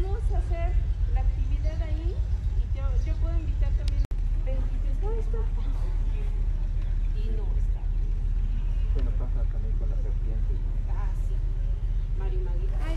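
A steady low rumble of wind on the microphone, with faint, indistinct voices talking over it.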